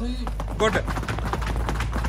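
Quick, irregular slaps and taps of hands and feet on a marble-tiled floor during a crawling exercise. A short call from a voice comes just over half a second in.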